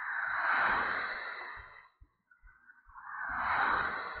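Two swells of rushing noise, each about two seconds long, rising and then falling. The second is a car overtaking the bicycle and passing close by.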